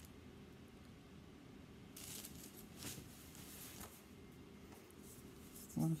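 Faint, soft rustles of hands pressing and rolling sugar paste, in a quiet room, a few brushing sounds about two to four seconds in.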